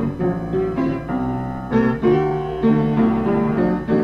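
Solo blues piano from a 1965 field recording, playing a steady run of struck chords over a bass figure between sung lines.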